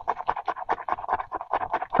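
Scratching off the coating of a paper scratch-off savings challenge sheet: a quick run of short, rasping strokes, several a second.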